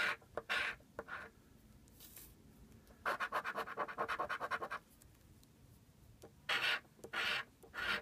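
A coin scraping the coating off a scratch-off lottery ticket: a few separate strokes, then a quick run of rapid strokes lasting nearly two seconds, then a few more strokes near the end.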